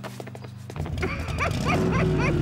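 Cartoon soundtrack music: a soft held chord, then a louder cue with a bass line comes in just under a second in, topped by a run of short rising chirps about four a second.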